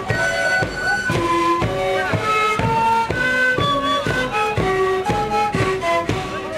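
Andean sikuri ensemble playing a sikuriada: many siku panpipes sounding a breathy traditional melody together over a steady beat of bombo bass drums.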